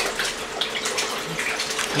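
Bath water being swished by hand in a small plastic baby bath tub, irregular splashing and sloshing as she tries to work up bubbles in it.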